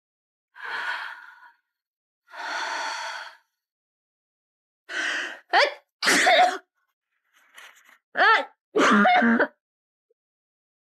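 Two long breathy sighs, then a woman with a cold sneezing twice, each sneeze led by a short sharp intake of breath.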